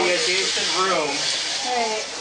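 Voices of people exclaiming, over a steady hiss.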